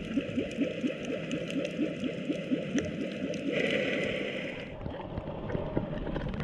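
Underwater recording of water gurgling and bubbling around the camera. In the first three seconds there is a run of short rising chirps, about four a second. About three and a half seconds in, a brief brighter hiss lasts around a second.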